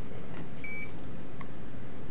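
An ultrasound scanner gives a single short electronic beep just over half a second in, with a few light clicks around it. A steady hiss of background noise runs underneath.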